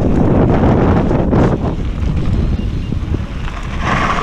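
Wind buffeting the microphone of a handlebar-mounted action camera on a mountain bike moving fast along a dirt trail; the rush eases a little after about a second and a half.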